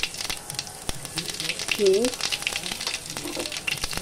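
Cumin seeds sizzling and crackling in hot mustard oil in a kadhai: the tempering (tadka) that starts the dish, a steady hiss full of quick small pops.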